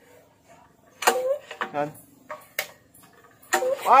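People talking in short bursts over a few light metallic clicks from hands readying a Robin EY28D 7.5 hp small engine for a pull-start. A shout of "Fire" comes right at the end as the recoil starter cord is drawn out; the engine is not yet running.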